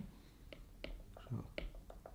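Stylus tapping and scraping on a tablet screen during handwriting: a string of light, irregular ticks, several a second, with a brief low murmur from the writer a little past halfway.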